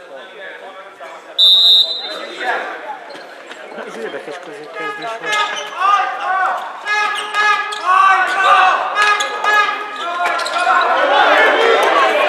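A short, loud referee's whistle blast about a second and a half in, followed by a handball bouncing on the wooden hall floor amid players' shouts, all ringing in a large sports hall.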